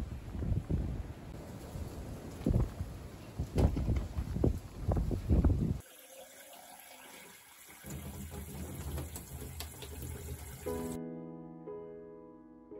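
Gusts of wind buffeting the microphone, then, after a cut, a tap running steadily into an earthenware jug in a stainless-steel sink. Music begins near the end.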